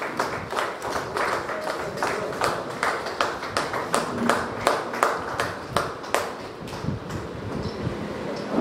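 Scattered hand clapping from a small group, irregular claps several a second, thinning out about six seconds in.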